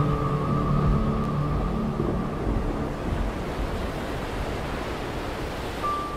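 Ambient music with sustained, held notes that fade away about halfway through, over a steady rush of stormy sea waves.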